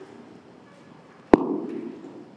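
A single sharp knock or bang about a second and a third in, the loudest thing here, ringing out in the reverberant church for about half a second over the low shuffle of people getting to their feet.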